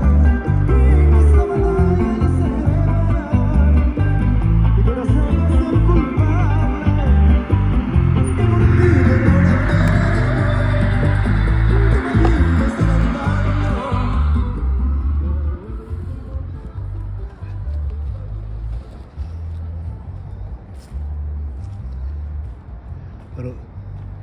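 Music with a steady low beat and a singing voice, loud for the first half and dropping noticeably quieter a little past halfway.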